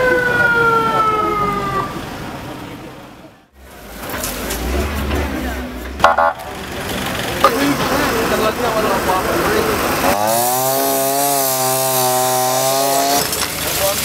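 An ambulance siren, its wail falling in pitch over the first two seconds before fading out. Rescue-site noise with a sharp knock follows, then about ten seconds in a wavering held tone with many overtones lasts some three seconds.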